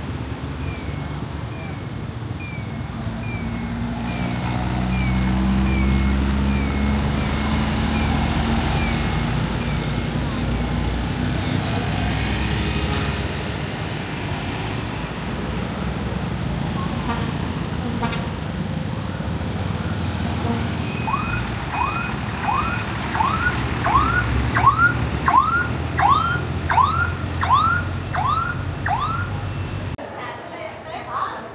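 Street traffic with motorbike and small-truck engines running past. A string of short, evenly repeated chirps sounds over the first third. Near the end a faster run of rising, siren-like whoops follows.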